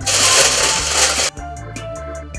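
Aluminium foil crinkling as it is pressed down over a bowl, over background music with a steady bass line; the crinkling cuts off about a second in, leaving only the music.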